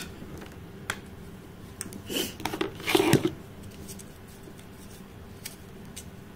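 Hands handling small cosmetic packaging and makeup palettes: a few sharp clicks and light rustling, loudest in two rustles around two and three seconds in.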